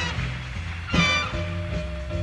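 High school jazz big band playing live, swing style: two short, loud horn-section accents about a second apart over a steady bass line.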